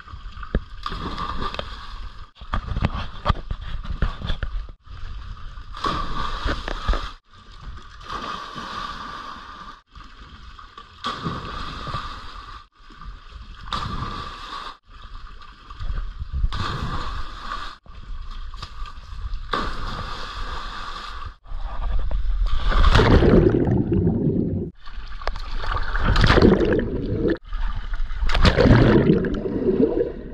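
Swimming-pool water in a string of short clips that cut off abruptly every two or three seconds: splashing from jumps and dives into the pool, and bubbling, gurgling rushes as the camera goes under the water. The last few clips are the loudest.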